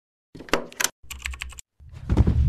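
A quick run of sharp, keyboard-like clicks in two short flurries, a sound effect over the animated toggle-switch logo. Near the end a deeper, fuller sound begins to swell in.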